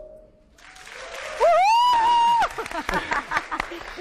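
Studio crowd clapping and cheering as a dance track ends, with one loud whoop that rises and is held for about a second near the middle, followed by scattered clapping.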